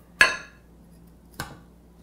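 A metal utensil clinks against a glass baking dish twice: a sharp, ringing clink just after the start and a fainter one about a second and a half in.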